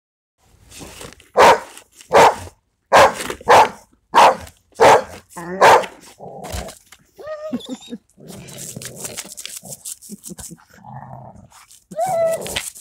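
Rottweilers barking: seven loud barks about 0.7 s apart in the first half, then quieter growling and scraping.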